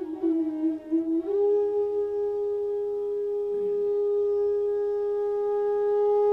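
Bansuri (bamboo flute) playing a short wavering phrase, then holding one long steady note from about a second in.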